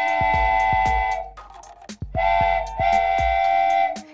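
Cartoon train whistle sound effect: a steady chord whistle in long blasts, one ending about a second in, then two more after a short pause. A background music beat of low thumps runs underneath.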